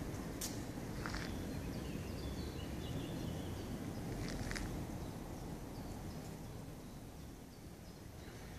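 Outdoor ambience: a steady low rumble with a few short, high chirps scattered through it, growing slightly quieter near the end.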